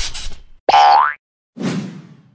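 Cartoon sound effects for an animated logo: a short noisy burst, then a loud tone that glides up in pitch about three quarters of a second in, then a softer noisy burst that fades away near the end.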